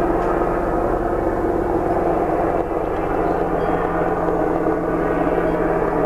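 Steady droning noise with a low hum underneath.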